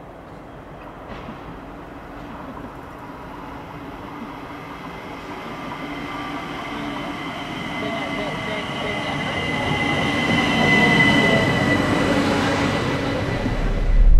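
Vienna S-Bahn S 80 electric train approaching, its running noise growing steadily louder throughout. A high-pitched squeal rises above the rumble in the last few seconds.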